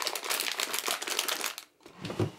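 A hand rummaging through small items in a desk drawer: a quick run of clicks, rattles and crinkles that stops about a second and a half in.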